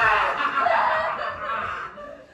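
A woman laughing loudly and wildly in a performed, maniacal fit, trailing off near the end.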